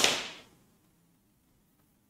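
A single sharp crack or slap with a short hissy tail that dies away within about half a second, followed by quiet room tone.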